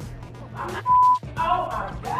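A short, loud censor bleep: a steady pure tone of about 1 kHz, lasting about a third of a second, about a second in. It cuts over speech, with music underneath.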